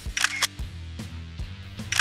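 Background music with a camera-shutter sound effect: a few sharp clicks within the first half second.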